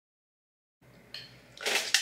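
Dead silence for most of the first second, then faint room tone with a small click, and a short louder rustle of noise with a sharp click near the end, just before speech begins.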